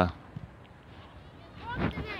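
A small dog giving a few short, high yelps near the end, after a stretch of quiet open-air background.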